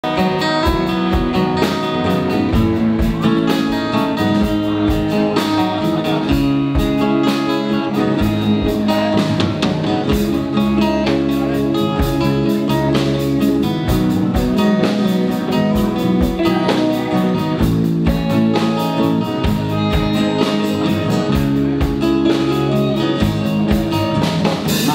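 A live band playing an instrumental passage: acoustic guitars, an electric guitar, an electric bass and a drum kit keeping a steady beat.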